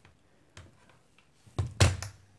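Tablet and keyboard dock being handled on a desk: a few faint clicks, then two louder thunks near the end.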